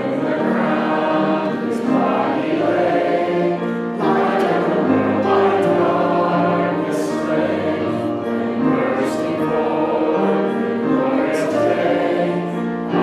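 Church congregation singing a hymn together, led by a man's voice, in long held notes.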